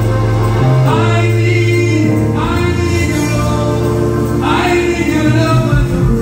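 Live gospel worship music: a man singing lead through a microphone, with choir-like voices and sustained instrumental accompaniment underneath. New sung phrases begin about a second in, a little after two seconds, and about four and a half seconds in.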